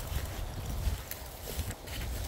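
Wind buffeting a phone microphone in low, uneven gusts, with the swish and steps of someone walking through long dry grass.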